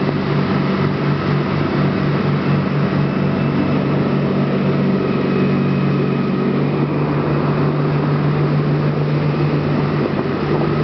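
Formula 27PC cruiser running at speed, its engine a steady low drone over the rush of the churning wake.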